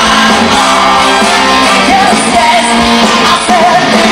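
A live band playing a song at full volume, with singers over electric guitars, keyboards and drums.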